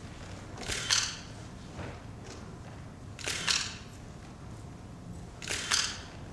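A still camera's shutter firing three times, about two and a half seconds apart, as a posed group portrait is taken.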